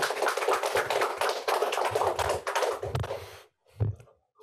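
Small audience applauding in a room, the clapping dense and steady, then cutting off suddenly about three and a half seconds in; a single brief noise follows near the end.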